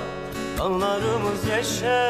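A Turkish song: a voice singing with vibrato over acoustic guitar, with the word "görecek" sung near the end.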